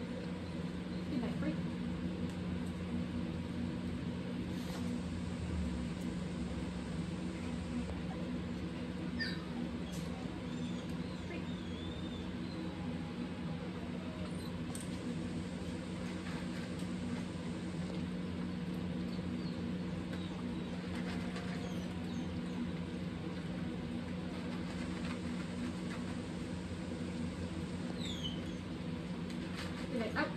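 A steady low hum runs throughout, with scattered faint clicks and small squeaks as two dogs eat dry kibble from plates.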